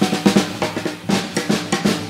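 Jazz drum kit playing a passage of quick snare and bass-drum strokes, several hits a second.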